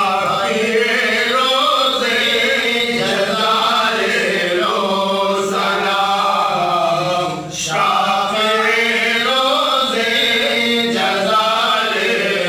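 A man's voice chanting a devotional recitation in long, drawn-out melodic phrases with short breaks between them.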